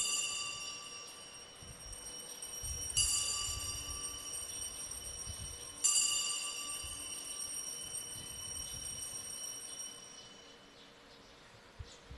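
Altar bell struck three times, about three seconds apart, each ring fading slowly, marking the elevation of the consecrated host.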